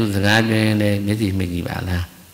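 A Buddhist monk's voice intoning a long, drawn-out, chant-like phrase at a steady, level pitch, which breaks off just before the end.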